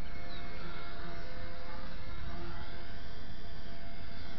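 XK K120 micro RC helicopter's brushless motors and rotors whirring steadily in flight, a thin whine over a low, steady rumble. The whine fades near the end.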